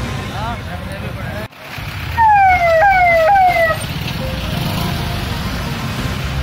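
A vehicle siren sounds three short falling sweeps, each jumping back up to its starting pitch, from about two seconds in to near four seconds, over crowd chatter and street noise.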